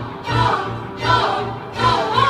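Choir singing over orchestral music, swelling and fading in regular phrases about three-quarters of a second apart.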